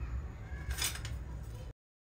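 Low steady rumble of a gas stove burner under a pot, with a short hiss-like noise about a second in. The sound cuts off abruptly to dead silence just before the end.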